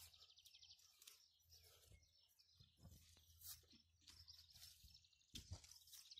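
Near silence outdoors, with a faint insect trill of rapid, evenly spaced high pulses in the first second and a few faint clicks later.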